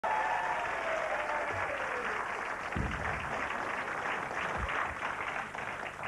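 Studio audience applauding, the clapping easing off slightly near the end.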